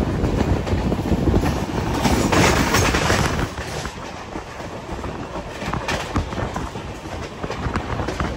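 Passenger train in motion, its coach wheels clattering over rail joints and points along with the rumble of the running train. It is louder for the first three seconds or so, then drops to a quieter run.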